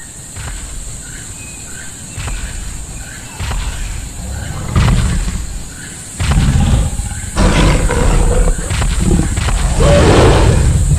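Animal roars and growls used as an intro sound effect, surging louder in waves and heaviest in the second half, with a few short high chirps in the first half.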